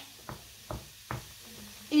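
Wooden spoon knocking against a frying pan of cream sauce while stirring: three short knocks a little under half a second apart.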